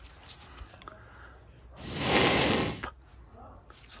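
A single breath blown hard through the rubber hose of a furnace's inducer pressure switch, a burst of rushing air lasting about a second, beginning about two seconds in. It is a check that the hose is clear of blockage such as cobwebs.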